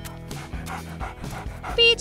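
A dog panting in quick, even breaths, over background music.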